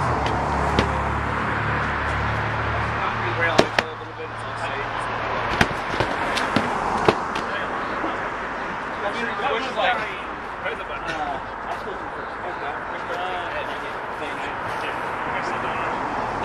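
Padded boffer swords striking shields and fighters in sparring: a series of sharp whacks, several in the first seven seconds and sparser after.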